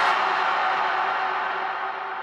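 Golden buzzer sound effect: a held, echoing musical tone slowly fading, over crowd cheering.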